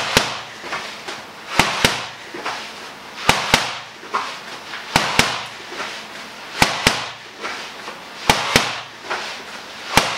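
Boxing gloves hitting Thai pads in pairs of sharp smacks, a quick one-two about every second and a half. Each pair comes at the top of a sit-up, with softer noise between the pairs.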